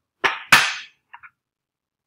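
Two sharp knocks with a brief clattering tail, about a third of a second apart, the second the louder, then a faint click: a rotating turntable platform being picked up and handled.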